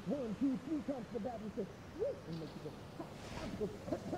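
A person's voice making a quick run of short hoot-like sounds, about five a second, thinning out after about two seconds.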